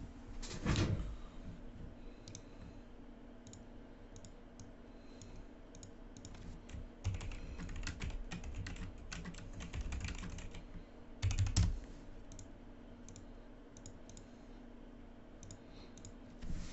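Typing on a computer keyboard: irregular runs of key clicks, with a louder knock about a second in and another around eleven seconds.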